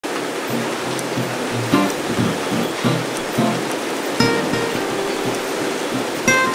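Steady machinery noise from a recycling plant's rotating disc screen, with plucked acoustic guitar music laid over it.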